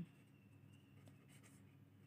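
Near silence, with the faint scratching of a felt-tip pen writing on paper.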